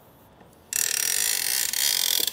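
Ratchet of a Kuat Piston Pro X bike rack's wheel-hoop arm clicking rapidly as the arm is swung. It starts under a second in and the clicks run together into a continuous rattle.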